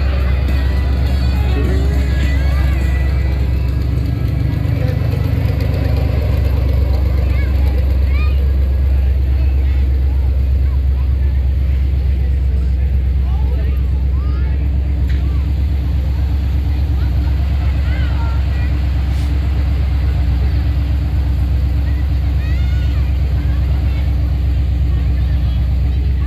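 Monster truck engine running with a steady low rumble.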